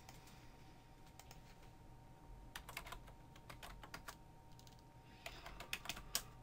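Faint typing on a computer keyboard, as a web address is entered: one short run of keystrokes about two and a half seconds in, and another near the end.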